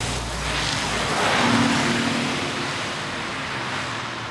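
A car driving past on a wet street: tyres hissing on the wet road, swelling to a peak about a second and a half in and then fading.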